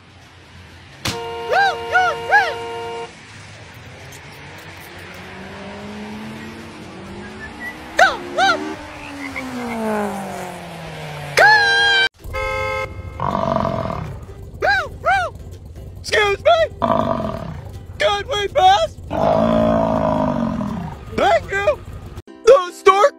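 Mixed voices and music, with a car horn honked briefly about twelve seconds in.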